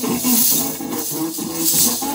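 A Hindi film song plays while many lezim, wooden dance frames strung with small metal cymbals, jingle together as the dancers shake them in time. The jingling swells and fades in rhythm over the music.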